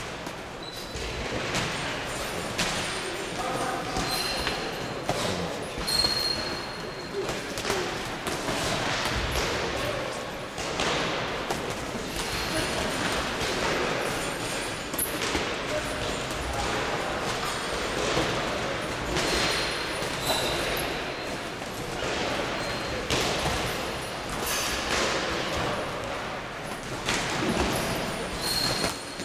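Boxing gloves landing in sparring: irregular thumps and slaps of punches on gloves and headgear, echoing in a large gym hall over background voices, with a few brief high squeaks.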